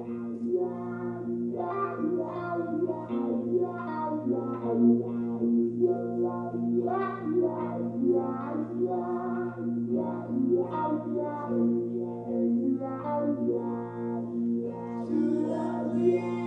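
Guitar playing a run of plucked notes over a steady low tone.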